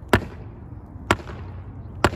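Hollow section of a stainless steel spear staff whacked against a palm tree trunk: two sharp hits about a second apart.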